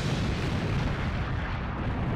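An explosion-like rumble from an intro sound effect, a steady noise with no tune in it that slowly dies away.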